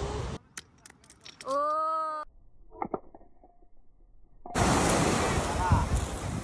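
Small stones clicking against each other as a flat beach stone is handled at a balanced stone stack, with a brief hum from a person's voice in between. About four and a half seconds in, a sudden cut brings in waves washing onto a beach, with wind on the microphone.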